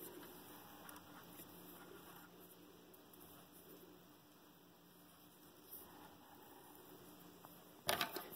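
Near silence: room tone with a faint steady hum and one slight tick about six seconds in.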